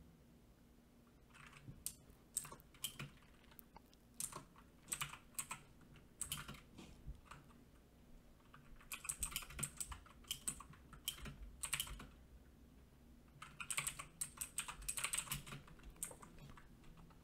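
Faint computer-keyboard typing: bursts of quick keystrokes with short pauses between, starting about a second and a half in.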